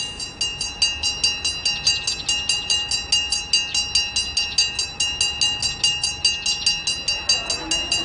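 School bell ringing rapidly and steadily, a metal bell struck about five or six times a second with a bright, sustained ring.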